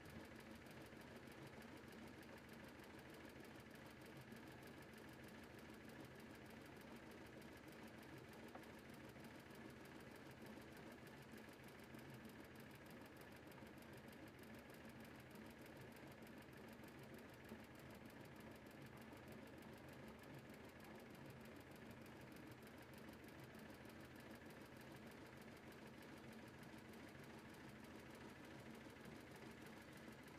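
Faint, steady running of a motor boat's engine while the boat is under way, even throughout with no change in speed.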